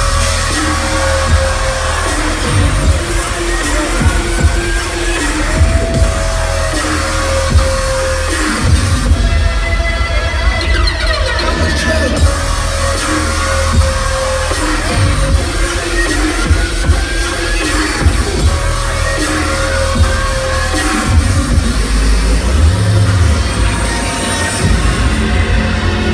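Loud live dubstep played through a large venue's sound system and heard from within the crowd. The bass drop hits right at the start, with heavy sub-bass under a busy electronic lead.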